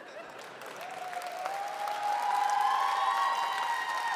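Studio audience applauding, the applause swelling up from nothing over the first couple of seconds, with cheering voices over it.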